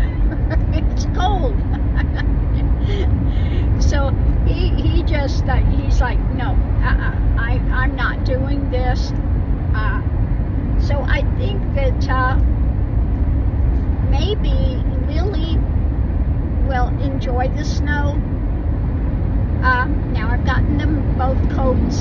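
A woman talking over steady road and engine noise inside a moving car's cabin.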